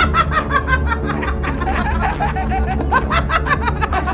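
Several women laughing in short, repeated bursts over background music.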